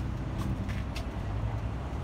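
Steady low rumble of motor vehicles, with a few faint clicks.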